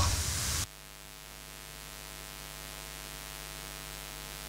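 Steady electrical hum with many faint overtones under a low hiss, the noise floor of a sound system or recording channel. A louder noisy stretch at the start cuts off suddenly under a second in.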